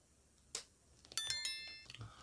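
A small metallic chime rings once, several high clear tones sounding together and dying away within about a second, after a faint tap.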